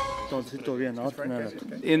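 A man's voice praying aloud, starting about a third of a second in, in low, wavering phrases, just after the music cuts off.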